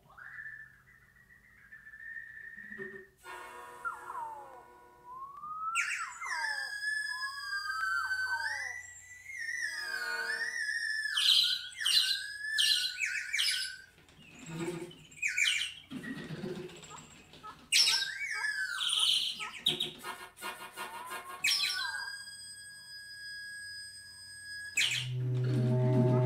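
Improvised bird-like wind music: whistled tones that glide up and down, swoop and chirp, with short pauses between phrases. Near the end a low sustained note on a large wind instrument comes in underneath.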